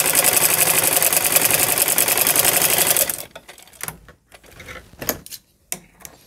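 Domestic sewing machine running fast, stitching a sleeve seam on a kurti, with a rapid even chatter that stops abruptly about three seconds in. A few short clicks follow.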